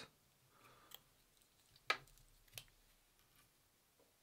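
Three faint, sharp clicks from fly-tying tools, hackle pliers and a bobbin holder, being handled while a hackle feather is wound on; the loudest comes about two seconds in.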